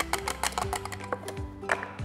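Background music with sustained notes, over a run of light clicks from a utensil knocking against a glass jar as it stirs the olive oil mixture.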